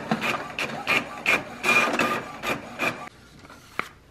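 HP printer printing a page: the print mechanism makes short whirring passes, about three a second, as the paper feeds out. It stops about three seconds in, and a single click follows near the end.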